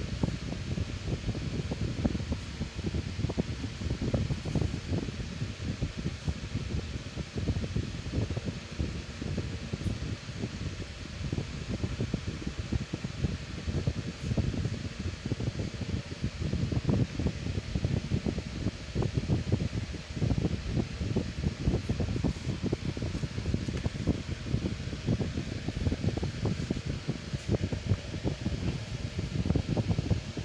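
A running fan: a steady, fluttering rush of air noise, deepest in the low end, as the moving air buffets the microphone.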